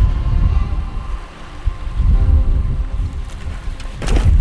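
Wind buffeting the microphone in a steady low rumble, with faint background music of held notes coming in about halfway through.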